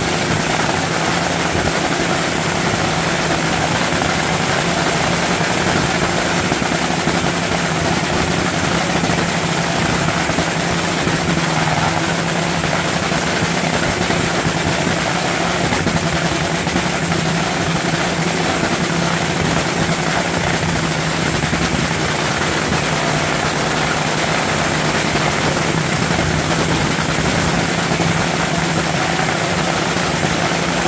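Nitromethane-fuelled supercharged Hemi V8 of a Funny Car dragster idling steadily through a pit warm-up: a loud, even drone with no revving.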